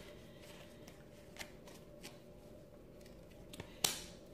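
Tarot cards being handled while the next card is drawn: a few faint clicks and rustles, then a sharper card snap just before the end.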